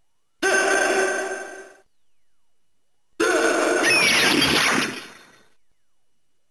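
Electronic toy sound effects from an Ultraman Trigger transformation toy's speaker, part of its Power Claw attack sequence. A ringing effect with steady tones starts about half a second in and fades over about a second. Around three seconds in comes a longer effect with sliding pitches, which fades out.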